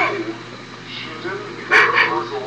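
A dog whimpering and yelping: a whine falling in pitch at the start, then a short loud yelp near the end, over a steady low hum.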